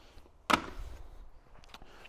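One sharp knock about half a second in, followed by a short rustle: handling noise as the operator's manual is put down and gloved hands move to the Styrofoam shipping box.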